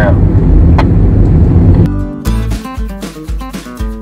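Loud, steady road and engine noise inside a moving car, with a single click about a second in. About two seconds in it cuts off sharply and acoustic guitar music takes over, strummed in a country style.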